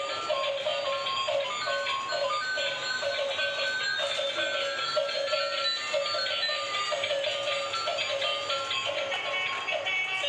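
Two light-up toy cars with clear bodies and visible gears, their built-in speakers playing tinny electronic tunes over each other, with a rising and falling siren-like tone around the middle.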